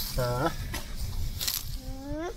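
Loose garden soil scraped and pushed by gloved hands around the base of a sapling, a few brief scratchy rustles. A man's short low 'heh' comes early on, and a small child's higher voice glides up near the end.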